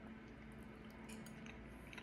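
Very quiet room tone with a faint steady hum and a few faint clicks of a metal fork against a ceramic plate as a bite of food is taken.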